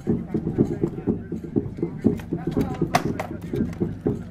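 Swords striking shields and armour in a bout of armoured combat: several sharp cracks, the loudest about three seconds in, over a constant low murmur of voices.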